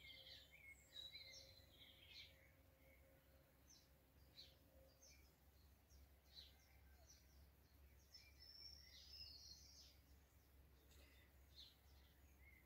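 Near silence, with faint birdsong: small birds chirping now and then in short high notes over a low background hum.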